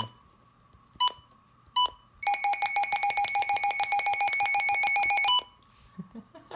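S.A.M.E. digital weather/all hazards alert radio running its alert test. Two short button beeps come first, then a rapidly pulsing alarm tone sounds for about three seconds and cuts off.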